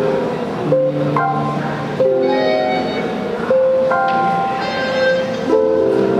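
Live instrumental music from a trio of melodion (melodica), theremin and piano with Tenori-on: sustained, reedy held chords that shift to new notes every second or so.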